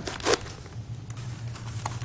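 Scissors snipping into a rolled newspaper tube: a few short cutting and crinkling sounds of paper in the first half-second, then only faint paper handling over a low hum.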